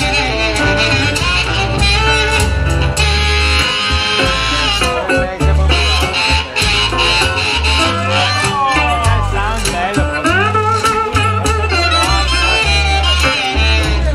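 Live blues band playing an instrumental passage: upright bass plucking a bass line, guitar, a steady washboard rhythm and amplified harmonica, with lead notes bending up and down.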